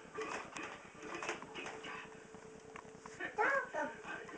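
A young child's short, high-pitched vocal sound, bending up and down in pitch, about three seconds in. Before it there are a faint steady tone and a few light taps.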